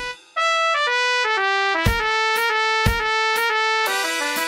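Notation-software playback of a brass quintet arrangement with drum part: a trumpet plays a quick, stepping melody over held lower brass. The music drops out briefly just after the start, and there are two drum-and-cymbal hits about a second apart near the middle.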